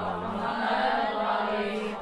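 A voice chanting in long, slowly gliding held notes without a break.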